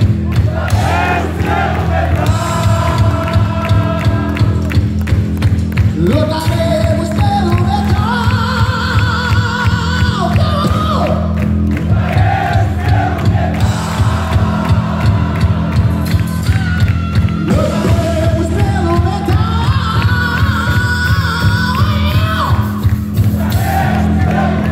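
Live rock band playing loud and continuously: distorted electric guitars, bass and drums keeping a steady beat, with a melody line bending above them, heard from among the audience in a large hall.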